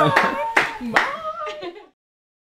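A few hand claps mixed with voices, fading out to silence just before the end.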